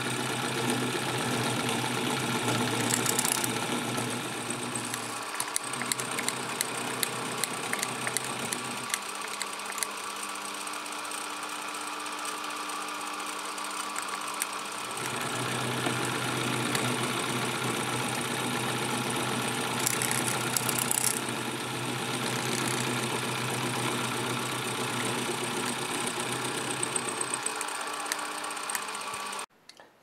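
A small vertical milling machine running as its end mill cuts a hexagon flat into a brass nut: a steady motor hum with the rasp of cutting. The lower hum drops away for several seconds in the middle, and the sound cuts off abruptly just before the end.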